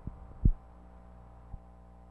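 Three dull low thumps on an old news-film soundtrack, the loudest about half a second in, over a steady electrical hum.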